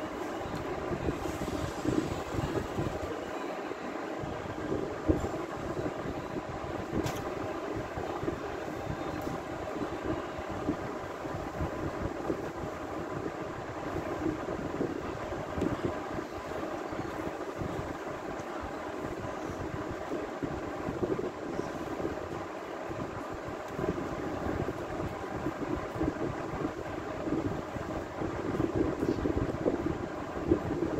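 Steady mechanical background rumble with a faint hum, without speech.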